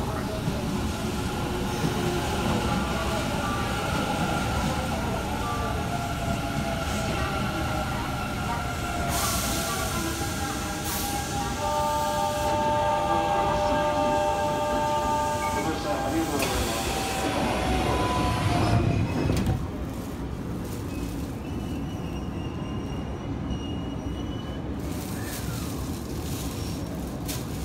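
Electric train running at a station platform: motor whine with tones that hold and glide in pitch over the rumble of the cars. It grows louder until about nineteen seconds in, then drops to a lower steady background.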